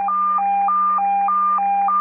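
Fire dispatch radio alert tone: two pitches alternating high-low, each held about a third of a second, over a steady low hum. It is the pre-alert that announces a call going out to the fire department.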